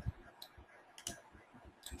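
Three faint, sharp clicks from a computer keyboard or mouse, a little under a second apart, the middle one the loudest.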